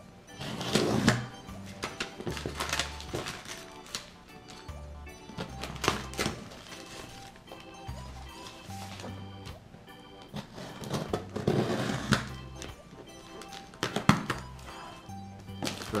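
Background music with a low bass line, over the sounds of a cardboard shipping box being opened: a knife slitting packing tape, a plastic sleeve crinkling and thunks of the box flaps and handling.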